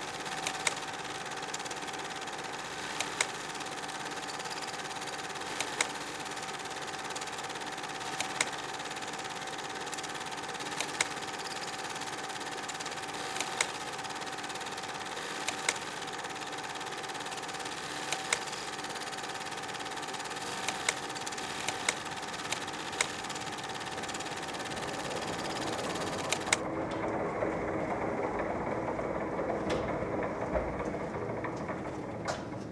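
A machine running steadily with a whirring hum and a held tone, struck by sharp clicks about every two and a half seconds. Near the end the high hiss cuts off and a lower rumble takes over.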